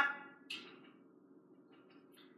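The fading end of a spoken word, a brief soft hiss about half a second in, then near silence: room tone. The brush tapping on the canvas is not heard.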